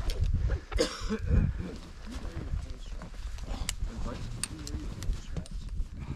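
Voices of several people talking in the background, with a low rumble of wind on the microphone and a few sharp clicks.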